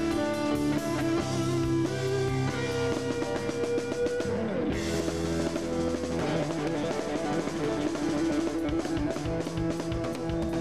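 Live rock band playing an instrumental passage with no singing: electric guitar out front over a drum kit.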